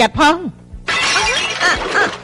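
A liquid-filled ceramic jar smashing on the floor about a second in, a dense crash of breaking pottery lasting about a second, with a woman's voice over it.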